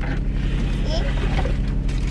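A car's power sunroof sliding open over the steady low hum of the car.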